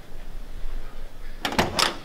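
Cab door of an old 1969 Ford pickup being opened: a short cluster of metallic clicks and knocks about one and a half seconds in, after low handling rumble.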